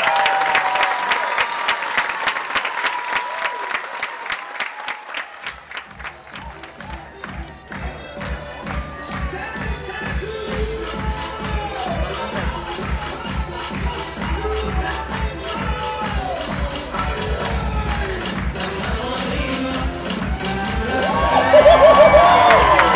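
Audience applause and cheering for the first five seconds or so, the clapping thinning out; then recorded dance music with a steady bass beat starts and plays on. Crowd cheering swells again near the end.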